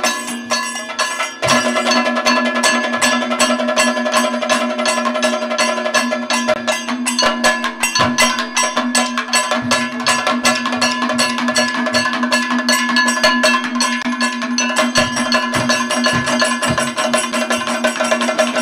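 Kathakali percussion accompaniment with no singing: rapid drum strokes over the steady ringing of a struck metal gong and hand cymbals keeping time. A short lull about a second in, then the strokes run on densely, with heavier low drum beats near the end.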